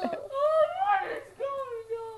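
A high, drawn-out whiny voice. A long note rises and then falls, followed by a second long note sliding down.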